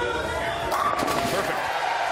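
A bowling ball rolling down the lane, then crashing into the pins for a strike about three-quarters of a second in, a clatter of pin hits. Crowd voices yell over it.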